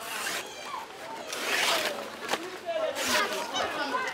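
Fresh banana leaves being torn and stripped from their stalks, a couple of rustling rips, with women's voices chatting over them.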